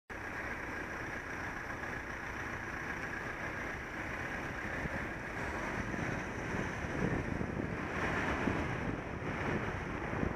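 Wind buffeting the microphone of a bicycle-mounted camera over a steady hiss of road noise as the bike rides off. The gusty rumble grows stronger from about halfway as the bike picks up speed.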